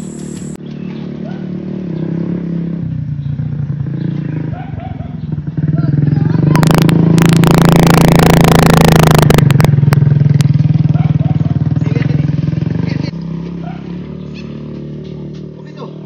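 Motorcycle engine running at a steady pitch. It gets much louder from about six seconds in until about thirteen seconds in, then drops back.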